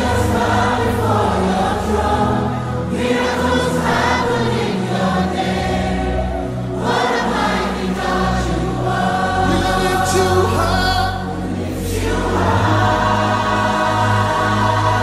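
Gospel worship song: a choir singing over held bass notes.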